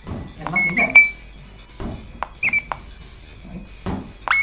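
High-pitched electronic tones from the Verbero sword-sensor system's sonification, each a quick upward sweep that settles on one steady pitch: the high pitch signals the thrust component of a dagger strike. Two such tones, about a second in and about two and a half seconds in, with sharp clicks alongside.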